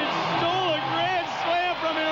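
A male play-by-play announcer talking excitedly, his voice high and swooping in pitch, over steady background noise.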